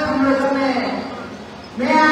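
A woman's voice through a public-address microphone, drawing out long, held vowels. It fades to a brief pause and resumes just before the end.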